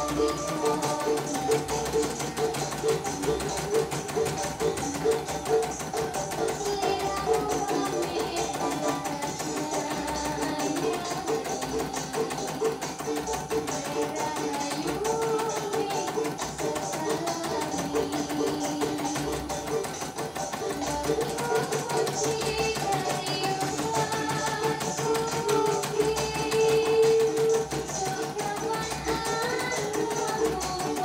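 Background music with a plucked string instrument carrying a melody.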